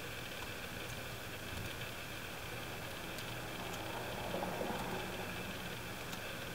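Steady low hum and hiss of a quiet room with a few faint computer-keyboard clicks as code is typed, and a brief soft rustle about four and a half seconds in.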